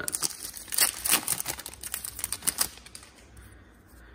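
Foil wrapper of a hockey card pack being torn open by hand: a quick run of crinkles and rips through the first two and a half seconds or so, then only faint handling.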